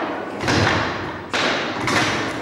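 Table football game: sharp knocks and thuds of the ball being struck by the rod figures and hitting the wooden table, three hits about half a second, a second and a half and two seconds in.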